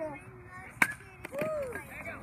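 A bat striking a baseball once with a sharp crack a little under a second in, followed by voices shouting.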